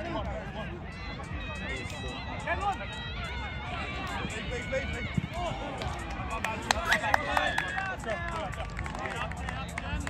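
Players and sideline spectators shouting and calling across an open sports field, several voices overlapping, with a steady low wind rumble on the microphone.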